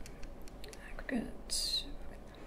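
A woman's soft, whispery vocal sounds at low level, with a short hiss about one and a half seconds in.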